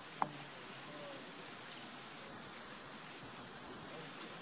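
Faint, steady outdoor background hiss with a single sharp click about a quarter of a second in; no macaw calls are heard.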